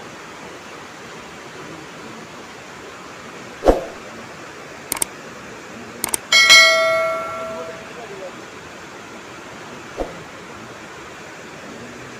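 A steady rushing hiss with a few sharp knocks and one loud metallic strike about halfway through. The strike rings with a bell-like tone that fades over about a second.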